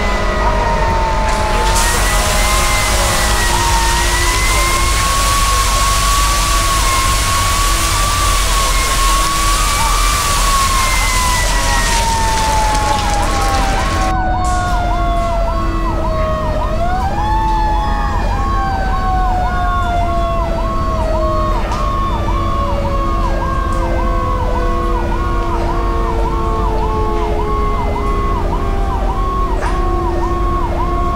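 Sirens sounding: a wavering siren wail that then winds down in long falling glides, rising once and falling away again, joined from about halfway by a second alarm tone pulsing about twice a second. Through the first half a loud steady hiss runs under it and stops abruptly.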